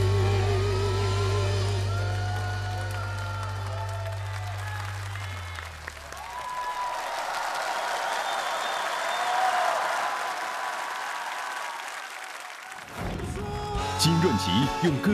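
A song ending on a long sung note with vibrato over a held low chord, the music dying away about five seconds in. An audience then applauds, and new music comes in near the end.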